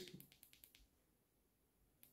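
Near silence with a few faint clicks in the first second: the Sofirn SP36 Pro flashlight's button being pressed in quick succession to undo its electronic lockout.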